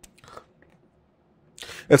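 A pause that is mostly quiet, holding faint brief mouth noises, then a man starts speaking right at the end.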